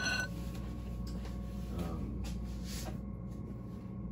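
A glass mixing bowl rings briefly after a spoon knocks it, the ring dying away within the first moment. Then a steady low hum with a few faint knocks.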